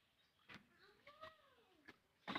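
A cat meowing once, a faint drawn-out call that rises and then falls. A cleaver chopping chicken on a wooden block knocks sharply about half a second in and again, more lightly, near the end.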